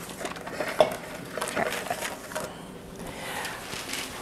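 Light clatter and taps of kitchen utensils and dishes being handled at a counter, with one sharper knock just before a second in.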